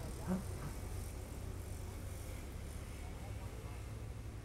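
Dirt bike engine idling steadily at a low, even level.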